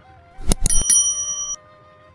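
A couple of sharp clicks, then a bright bell ring that stops abruptly about a second and a half in: a mouse-click-and-notification-bell sound effect for an on-screen subscribe-button animation.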